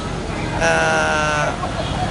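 A single drawn-out animal call about a second long in the middle, steady in pitch.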